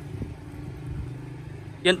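A steady low engine-like hum running in the background, with a few faint ticks.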